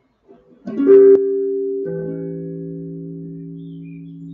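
Clean electric guitar: a few notes picked about a second in, then a chord that rings out and slowly fades. It is the chord on the sixth degree of the major scale, a minor chord.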